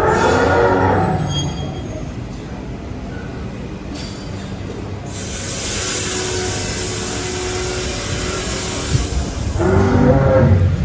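Animatronic woolly mammoth playing its recorded mammoth calls: a loud falling bellow at the start, a long, breathy, high trumpeting blast in the middle, and another bellow starting near the end.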